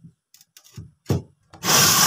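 Rubbing and scraping as things are moved about in a wooden glass-fronted cabinet: a few small clicks, a sharp scrape about a second in, and a longer, louder scrape near the end.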